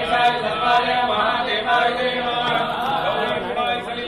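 Voices chanting devotional verses in a continuous recitation, as at a Hindu temple ritual.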